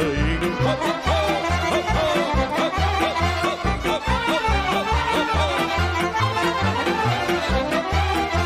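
Romanian folk orchestra playing an instrumental interlude: violins carry an ornamented tune over a steady, regular bass-and-chord beat.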